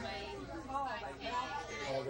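Background chatter of several passengers talking at once in a crowded railway passenger car, over a steady low hum.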